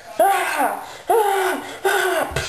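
A person's voice giving a villain's laugh in three long, evenly spaced "ha"s.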